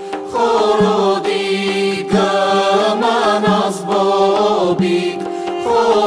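Armenian folk song sung by an ensemble: a sung melody, phrase after phrase, over a steady held drone.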